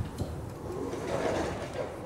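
Automatic sliding glass doors opening: a couple of sharp clicks at the start, then a whir that swells and fades, loudest a little past the middle.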